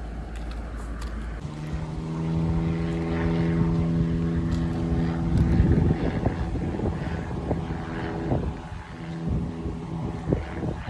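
Propeller aircraft passing overhead: a steady droning hum that comes in about a second and a half in, grows louder toward the middle and eases off near the end. A few sharp clicks sound in the middle.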